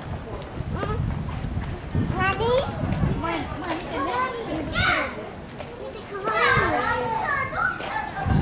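Children's voices chattering and calling in short high-pitched bursts, with a faint steady high whine underneath.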